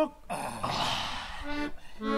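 A rush of noise lasting about a second, then short accordion chords beginning about one and a half seconds in.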